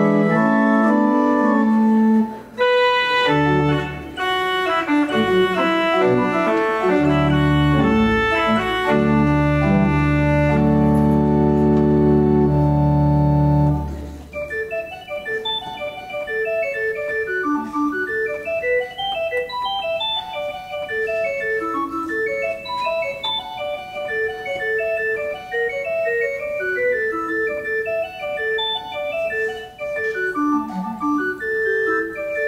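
Organ music, the opening prelude. For about the first fourteen seconds it plays full, sustained chords over a deep bass. Then it changes to a softer passage of quick running notes without the bass.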